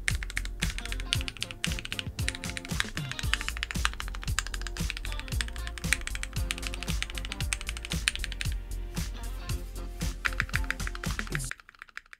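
Fast, continuous typing on a Keychron Q1 aluminium-case mechanical keyboard: a dense stream of key clicks that stops suddenly near the end, over quiet background music. The case's echo has been damped, so the keystrokes sound without the metallic reverberation.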